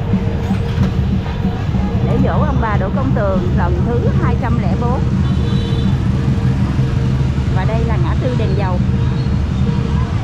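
Steady low rumble of street traffic, with motorbikes passing, and snatches of people's voices about two seconds in and again near the end.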